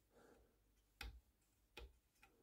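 Two faint clicks, about a second in and near the end, as fingers handle the metal adjustable peep sight on a rifle stock; otherwise near silence.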